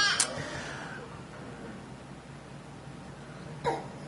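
Room tone of a lecture hall during a pause in the talk: a low steady hum under faint hiss, with the end of a spoken word right at the start and one brief short sound near the end.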